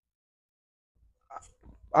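Near silence for about the first second, then a few faint small sounds, and a man's voice starting to speak at the very end.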